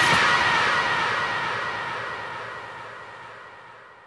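The closing tail of a house dance remix: the kick drum has stopped and a noisy, swirling wash of sound with sweeping tones is left ringing out, fading away steadily over about four seconds.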